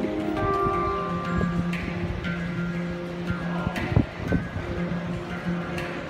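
A handpan played live: struck notes ring and overlap, with a quick run of notes near the start. There are two sharp, louder knocks around four seconds in.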